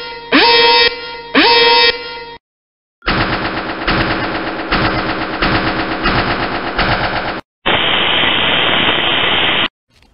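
Edited intro sound effects. Two pitched horn-like stabs, about one a second, each with a rising swoop, then a short pause. A rapid, machine-gun-like rattle lasts about four seconds, then a steady static-like hiss runs for about two seconds and cuts off suddenly.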